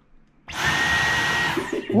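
Dyson V11 Absolute cordless stick vacuum switched on in Boost mode about half a second in: a sudden loud rush of air with a steady high motor whine through it, easing off near the end.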